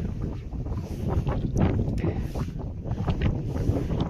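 Wind buffeting the microphone in a steady low rumble, with the running of a vehicle on the move beneath it.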